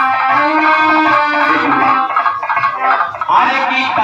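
Live Bhojpuri devotional folk music, with a melodic instrument carrying the tune. The level dips briefly about two to three seconds in.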